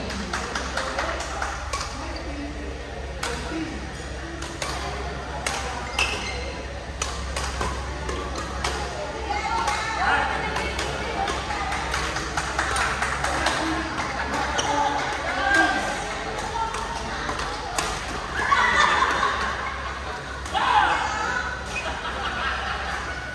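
Badminton rackets striking shuttlecocks: sharp pops at irregular intervals from rallies on several courts, echoing in a large sports hall over a steady murmur of voices.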